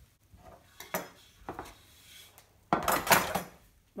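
Metal baking tin and baking tray clinking and scraping as cake slices are lifted out and laid on the tray: a few light clinks, then a longer, louder clatter about three quarters of the way through.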